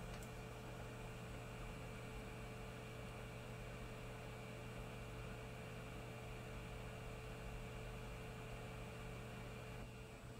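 Hot air rework gun blowing steadily, a faint hum with an even hiss over it, while a chip is being reflowed onto a circuit board.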